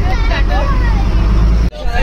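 Steady low rumble of a moving bus's engine and road noise heard inside the cabin, with voices chattering over it; the rumble stops suddenly near the end.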